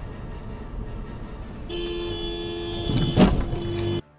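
A car horn sounds and is held steadily from a little before halfway, over the noise of a moving car, with one short, loud burst just after three seconds in.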